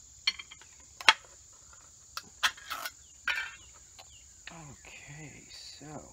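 Sharp clicks and clinks of a small metal dog-food can and a spoon against a ceramic plate as the can is opened and the food handled, the loudest clink about a second in. A steady high insect trill runs underneath.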